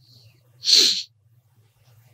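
A single short, sharp, breathy burst from a person a little over half a second in, over a faint steady room hum.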